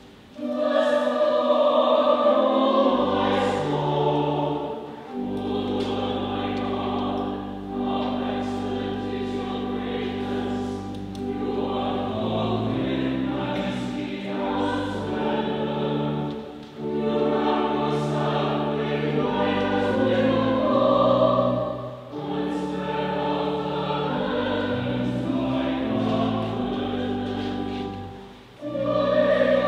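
Church music: a hymn or anthem sung by voices over held, sustained organ-like accompaniment, in phrases with short breaks between them.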